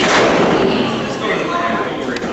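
A hard impact on the wrestling ring's canvas right at the start, followed by a noisy spread of crowd voices and shouting.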